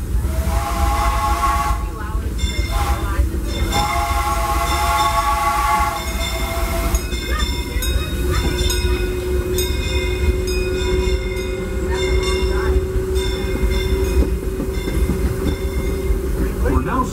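Steam whistle of the Disneyland Railroad locomotive Fred Gurley #3 sounding the grade-crossing signal (long, long, short, long) over the steady rumble of the running train. From a couple of seconds in, a railroad crossing bell rings with even strikes and carries on after the whistle stops.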